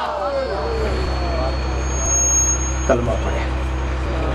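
Steady low hum, with faint voices in the first second and a brief thin high whistle about two seconds in.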